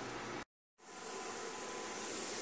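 Tomato sauce reducing in a hot frying pan, a faint steady sizzling hiss. It is broken by a short gap of dead silence about half a second in, where the video is edited.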